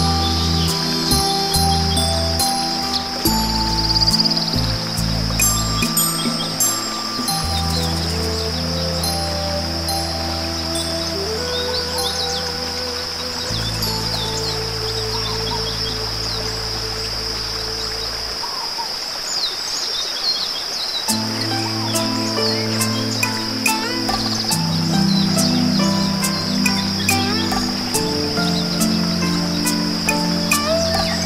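Slow meditation music of long held low notes and sparse melodic tones, mixed with birdsong chirps and a steady high hiss. The low notes drop out for a few seconds about two-thirds through.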